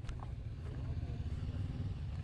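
Motorcycle engine running at low speed, a steady low rumble.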